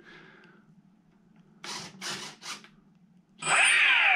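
Electric motor of an RC Corsair spinning up briefly with the propeller removed: a loud whine that rises and then falls in pitch as it spools down, near the end. It is being run to check that it turns the right way. Three short buzzes come a second or so before it.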